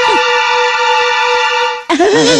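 A single held note from a cartoon soundtrack, steady in pitch for nearly two seconds, that stops suddenly just before the end.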